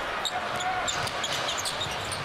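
A basketball being dribbled on a hardwood court, with short high sneaker squeaks from players running, over a steady arena crowd murmur.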